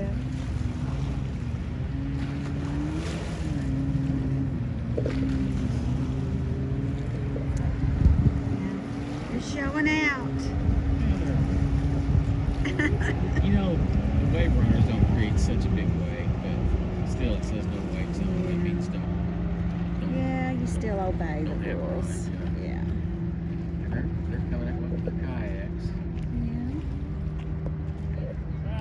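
Motorboat and jet ski engines running on the lake, a steady drone whose pitch steps up and down now and then, with brief voices over it.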